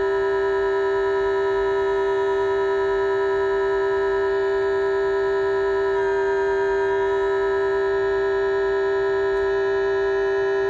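An Omnichord OM-84's C chord and a held C on an electronic keyboard sounding together as one steady organ-like tone, the Omnichord being trimmed by ear to match the keyboard's pitch. About six seconds in, some of the tones shift slightly as the tuning is adjusted, then hold steady again.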